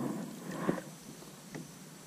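Two short splashes and drips of water as a largemouth bass is lifted out of the pond by the lip, with a sharp click just after and another about a second and a half in.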